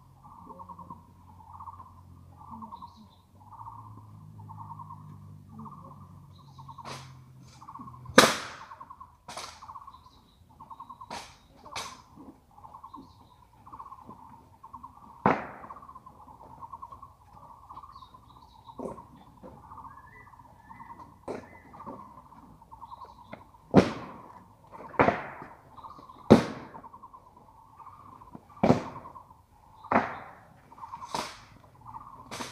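Sharp cracks and thuds at irregular intervals from an honor guard's ceremonial drill: rifles and boot heels striking, the loudest about eight seconds in and a run of them near the end. A steady pulsing call carries on underneath.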